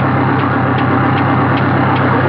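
An old car's engine running steadily at idle, with a light regular ticking, just after a tap on the carburetor got the stubborn engine going.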